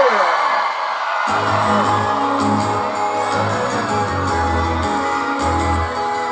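Live band starting a song in front of a cheering crowd: a held shouted note from the singer slides down at the start over crowd noise, and about a second in the band comes in with steady low bass notes and guitars.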